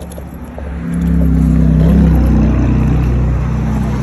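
A motor vehicle driving past close by on the street, its engine hum swelling about a second in, loudest around two seconds, then easing off.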